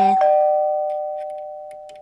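Two-note ding-dong doorbell chime: a higher note, then a lower one, each ringing on and fading slowly.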